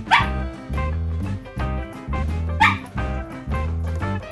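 Shetland Sheepdog barking twice, two short sharp barks about two and a half seconds apart, over background music.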